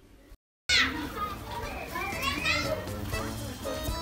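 Children's voices, playing and calling out, with other voices, starting suddenly just under a second in after a brief silence.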